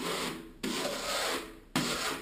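A steel spatula (trowel) scraping over decorative plaster on a wall in long strokes. One stroke ends about half a second in, a second lasts about a second and stops sharply, and a third starts near the end.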